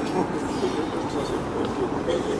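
Indistinct voices of people talking over a steady hum of city street noise.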